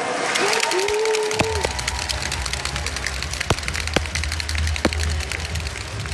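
Applause with a brief held call at the start. About a second and a half in, music with a steady bass starts over the PA in the large hall, with a few sharp knocks through it.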